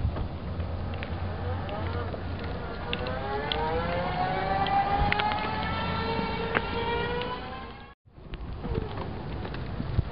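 Electric mobility scooter's 500-watt brushless motor whining as the scooter pulls away, the whine rising steadily in pitch as it gathers speed. The sound cuts off suddenly near the end.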